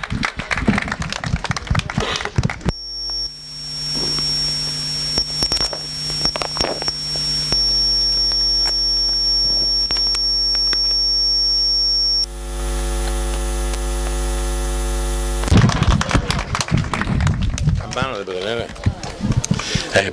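Public-address system giving out a steady electrical hum and buzz with a high whine while the microphone is being handled and adjusted at its stand. The hum starts about three seconds in; the whine stops about twelve seconds in, and the hum cuts off a few seconds later.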